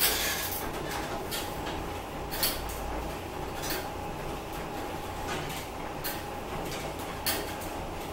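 Elliptical trainer in use: a steady whir from the machine, with a sharp clack or knock from the moving handles and pedals every second or so.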